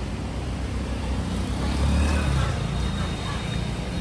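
Street traffic: a steady wash of road noise with a low engine rumble that swells about halfway through as a vehicle passes.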